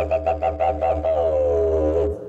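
Podcast theme music led by a didgeridoo: a steady low drone with pulsing, shifting overtones above it.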